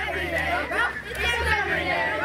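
Overlapping chatter of a group of children and young teens talking at once, with a low steady rumble underneath.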